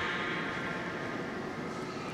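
A pause in a man's speech: only steady background hiss and room tone.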